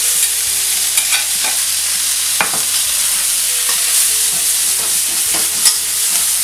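Chicken and vegetables sizzling in a very hot wok as they are stir-fried. A metal wok spatula scrapes and clacks against the wok several times, sharpest about a second in, midway and near the end.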